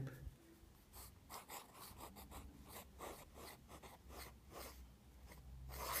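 Steel 1.4 mm calligraphy nib of a fountain pen scratching faintly over paper, in short strokes about two or three a second as a word is written in script. A longer, louder stroke comes near the end.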